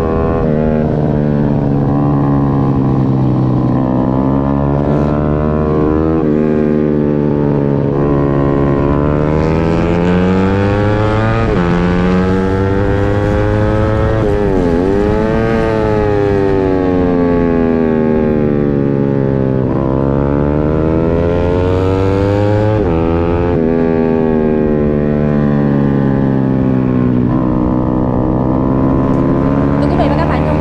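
A 150cc single-cylinder sport bike engine heard from an onboard camera at racing speed. Its pitch climbs as it accelerates and drops sharply when the throttle is closed for the corners, several times over. Wind buffets the microphone throughout.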